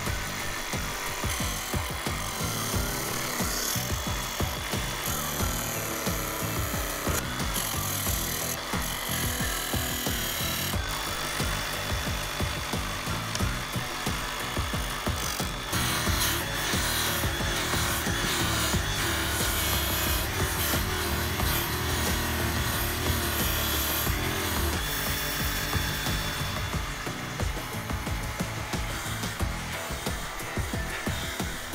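Small electric sanding disc of a Playmat 4-in-1 toy workshop machine running, with a wooden cut-out pressed and rubbed against it to smooth its rough edges. Background music plays along.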